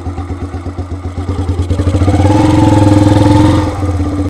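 Kawasaki Binter (KZ200) single-cylinder four-stroke engine of a custom chopper running with a steady, even beat, its revs rising about halfway through, held for a second or so, then easing back a little near the end.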